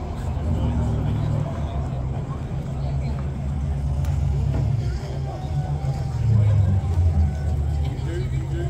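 A car engine idling close by, a low, steady rumble that gets a little louder about six seconds in, with crowd chatter behind it.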